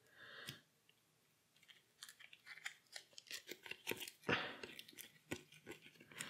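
Playing cards being drawn off a deck and gathered into a hand: a quick run of faint clicks and snaps from about two seconds in.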